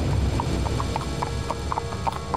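Horse hooves clip-clopping at a steady pace, about four to five beats a second, over a low steady rumble.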